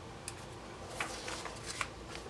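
Quiet paper handling: a few short rustles and soft taps from a sticker sheet and planner pages as stickers are placed and pressed down.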